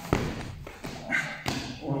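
A sharp thud of a knee dropping onto foam training mats as a wrestler changes level into a single-leg takedown, followed by softer thuds about half a second and a second and a half in.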